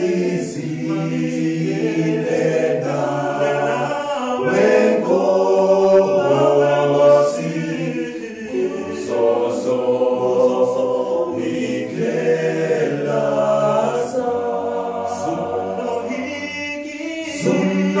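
Male vocal group singing in several-part harmony, low bass voices under higher parts, holding long chords that swell and change every second or two, loudest in the middle.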